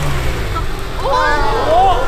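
Subaru BRZ's engine running low and easing off as the car rolls up to the blocks and stops, with a slight drop in pitch. About a second in, voices call out a long "oh" as it halts.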